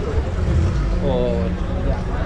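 Street ambience: a passerby's voice about halfway through, over a steady low rumble.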